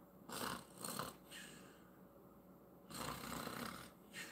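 A man breathing close to the microphone: a couple of short soft breaths early, then a longer breath about three seconds in.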